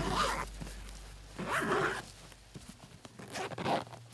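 A suitcase zipper being pulled open in several short strokes: one at the start, one about a second and a half in, and a weaker one near the end.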